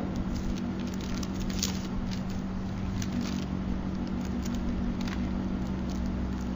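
Steady low hum with faint scattered crackles and light clicks, densest in the first half and once more about five seconds in.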